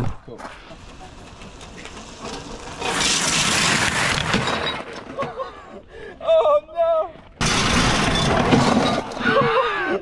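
Tricycle tyres skidding and sliding sideways across loose gravel in two long, loud crunching scrapes as the trike is drifted, with a shout between them.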